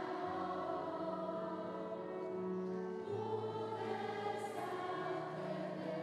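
Children's choir singing, with long held notes that shift to new pitches about three seconds in, over steady low notes underneath.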